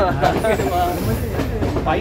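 Men's voices talking over the steady low rumble of a moving passenger train, heard from inside the carriage.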